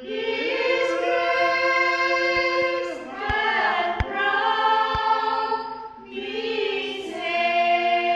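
Small group of women singing a Christmas carol in held, sustained notes, with phrase breaks about three and six seconds in. A few faint knocks sound under the singing.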